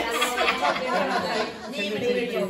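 Several women talking over one another with laughter: overlapping group chatter.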